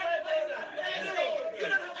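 Only speech: people talking.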